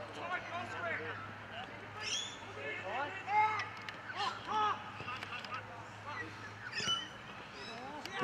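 Distant shouts and calls from footballers on an Australian rules football field, several short high calls rising out of the background.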